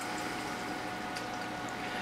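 Room tone: a steady low hiss with a faint steady electrical-sounding hum, no other event.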